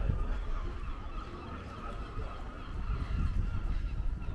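A bird calling repeatedly with honking cries, over a low rumble of wind and street noise.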